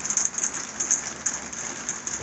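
Rain pattering steadily on the barn roof, a dense crackling patter.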